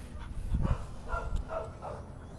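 Belgian Malinois giving a few short, excited vocal sounds while waiting on command. A low thump comes about half a second in.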